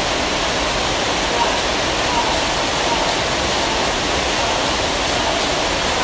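A steady, loud rushing noise fills the hall, with faint, irregular clicks of table tennis balls striking paddles and the table during rallies, and voices in the background.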